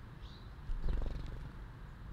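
Wings of a small bird whirring in a short, rapid flutter about a second in as it flies off the feeder, the loudest sound here, over a steady low rumble; a single short high chirp comes just before.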